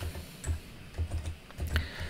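Typing on a computer keyboard: a handful of separate keystrokes, roughly one every half second, as a terminal command is entered.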